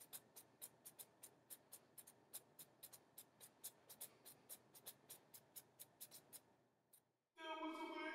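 Fingernails scratching a short beard's stubble: a rapid run of faint scratchy clicks, about six a second, that stops about a second before the end. Then a short, steady held hum.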